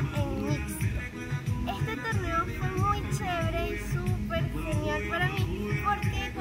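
Background music with a steady beat and a wavering melody line.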